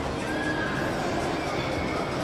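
Indoor shopping-centre ambience: a steady wash of background noise and distant voices in a large hall, with a short high-pitched call about half a second in and another near the end.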